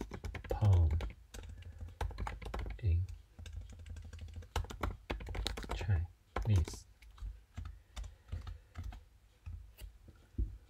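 Typing on a computer keyboard: an irregular run of quick key clicks as a sentence is typed out.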